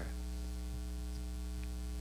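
Steady electrical mains hum: a low, even buzz that holds unchanged throughout.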